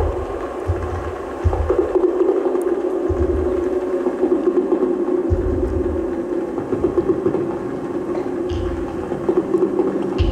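Doepfer A-100 eurorack modular synthesizer playing a sustained, wavering mid-pitched tone, with deep bass notes cutting in and out at irregular intervals of one to two seconds.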